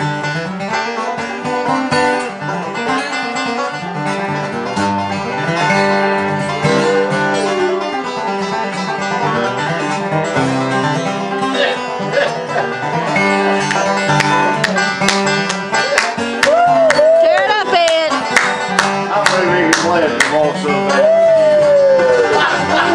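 Steel-string acoustic guitar being picked and strummed in a bluegrass/country style, with a voice briefly singing or humming along in the second half.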